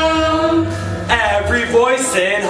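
A musical-theatre ensemble singing together, holding a long chord for about a second, then moving on to new notes.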